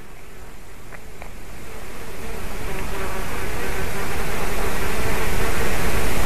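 Steady outdoor noise at a nest-camera microphone, with a faint, even buzz through it, swelling gradually louder. Two faint ticks come about a second in.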